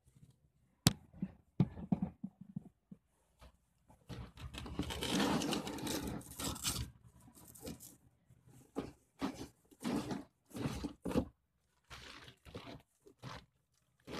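A corrugated cardboard carton being opened by hand: a sharp snap about a second in, then a long tearing sound from about four to seven seconds in, followed by a run of short scrapes and crinkles as the carton is handled.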